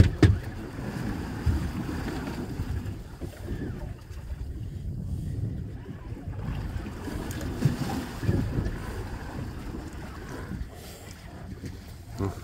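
Wind buffeting the microphone and sea water lapping against a small boat's hull, a steady low rumble, with a short laugh at the start and a few brief knocks.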